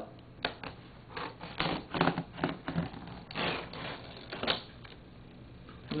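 Small scissors and fingers working at the packing tape on a cardboard box, cutting it open: an irregular run of scratchy clicks and scrapes that stops a little past halfway.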